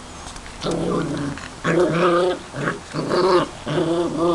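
Border collie puppies growling as they play-fight, several rough play growls in quick bouts.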